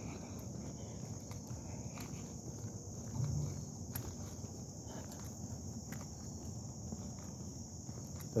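Steady high-pitched chorus of crickets, with footsteps on a paved road and rumble of the moving handheld microphone underneath. There is a brief low sound about three seconds in.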